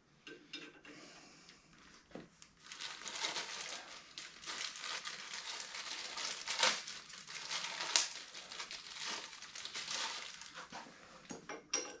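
Clear plastic bag of aftermarket head bolts crinkling and rustling as the bolts are handled and taken out, with a few sharper clicks mixed in.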